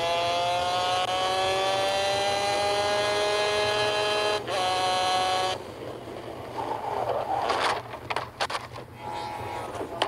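Racing go-kart engine at high revs, heard from the kart's onboard camera, its pitch climbing slowly as the kart accelerates, with a brief dip about four seconds in. It cuts off at about five and a half seconds, runs briefly again, and then sharp knocks and clatter come near the end as the kart crashes.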